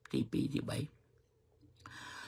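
A man speaking Khmer in a few short, clipped bursts, then a pause of about a second with no sound at all.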